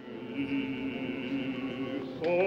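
Music fading in at the start: several sustained notes held steady together as one long chord.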